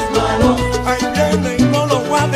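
Salsa music: an instrumental passage by a salsa band, with a steady bass line, percussion and melodic instrument lines, and no singing.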